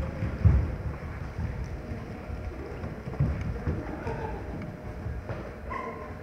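Dancers' feet thudding and shuffling on a stage floor in an irregular pattern, with the loudest thud about half a second in.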